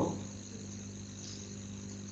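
Steady background room tone: a low electrical hum with a thin, steady high-pitched ringing above it, unchanging throughout.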